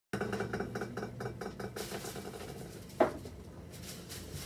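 Kitchenware being handled: a rapid rattle of about six beats a second that fades over the first two and a half seconds, then one sharp clink with a short ring about three seconds in.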